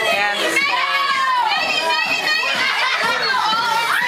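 A group of women onlookers shrieking and squealing excitedly, several high voices overlapping, with pitch sweeping up and down.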